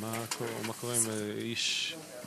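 A man's voice holding two long, level vowel sounds, about a second in all, then a short hiss like an drawn-out 's'.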